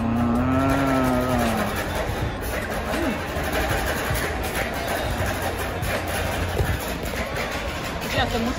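A person's long, closed-mouth 'mmm' of enjoyment while tasting ice cream, rising then falling in pitch over about a second and a half. Steady background noise follows.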